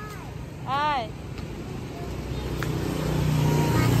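A little girl's short high-pitched squeal about a second in, then a low rumble that grows steadily louder toward the end.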